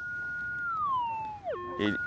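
Minelab GPX 6000 metal detector's target tone: a clean electronic tone held at a high pitch, then sliding down in pitch about a second in, with a second falling tone near the end. The signal marks a buried lead fishing sinker under the coil.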